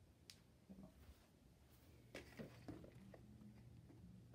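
Near silence: faint room tone with a few soft clicks and a faint low hum.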